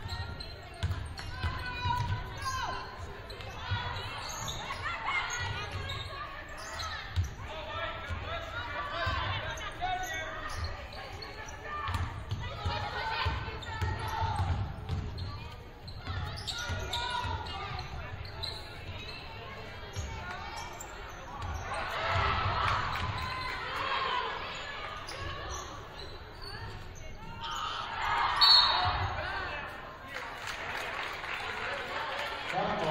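A basketball being dribbled on a hardwood gym floor, with echoing voices of players, coaches and spectators. The voices swell twice, loudest near the end.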